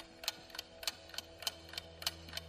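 Clock-style ticking sound effect counting down a quiz timer: short, quiet, evenly spaced ticks, about three a second, over a faint steady low tone.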